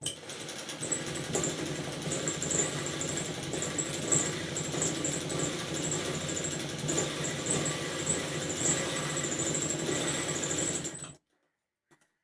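Sewing machine running at a steady speed, stitching a straight line through fabric, with a thin high whine over its rapid needle strokes. It starts abruptly and stops suddenly about a second before the end.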